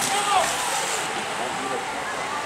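A bunch of road-racing bicycles passing on an asphalt street, heard as a steady, even hiss, with faint voices in the background.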